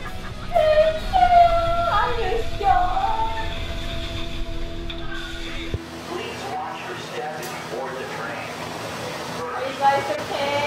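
Voices from a TV variety show, high and excited in the first few seconds, over steady background music. A low rumble underneath cuts off suddenly about six seconds in.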